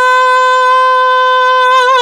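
A woman's solo voice singing a cappella, holding one long steady note that breaks into vibrato near the end.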